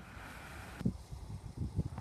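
Wind rumbling on the microphone, with a few soft low thumps from handling. The hiss drops away abruptly about a second in.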